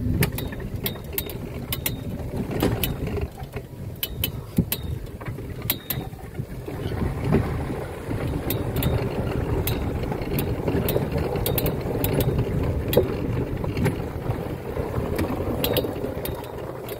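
A small open cart driving: a steady low rumble with frequent rattling clicks and knocks from its body and fittings, and from about halfway on a louder gritty noise of tyres rolling over gravel.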